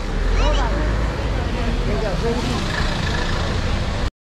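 Street ambience: a steady low rumble of traffic, with short snatches of people's voices.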